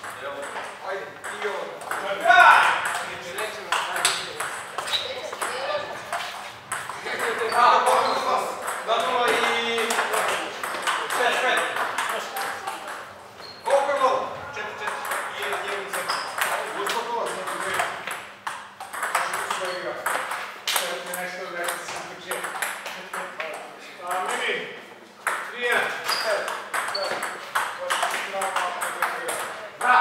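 Table tennis ball clicking repeatedly off the paddles and the table during rallies.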